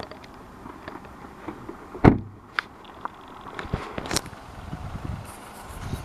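A car door shut with one solid thud about two seconds in, followed by a few lighter clicks and knocks from handling the car.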